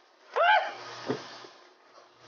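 A man's short, high-pitched yell of "Ah!" that rises and falls in pitch, followed about a second in by a brief dull thump.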